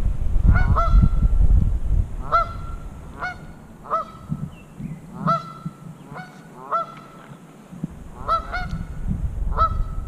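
A goose honking over and over, about a dozen short calls, some in quick pairs. A low rumble sits under the calls at the start and again near the end.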